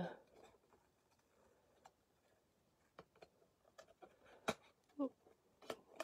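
Small scissors snipping through cardstock: a few faint, sharp snips spread about a second apart.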